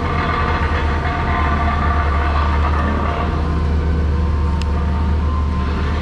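Dump truck's diesel engine running steadily, deep and even, with a faint steady whine above it.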